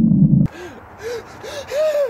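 A loud, steady low drone stops suddenly about half a second in. Then a person makes several short gasps, each rising and falling in pitch.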